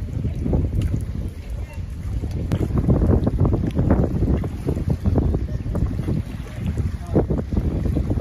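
Wind buffeting the microphone in uneven gusts, with water splashing and slapping over choppy waves.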